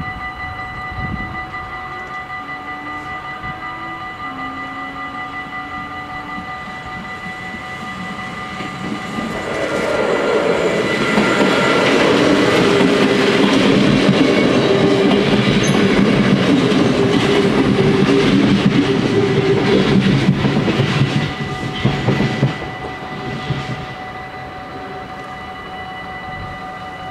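Level-crossing bells ringing steadily while an NS Sprinter electric multiple unit passes over the crossing. The train comes in about nine seconds in, stays loud for roughly ten seconds with a low rumble and hum, then fades with some wheel clatter, leaving the bells ringing.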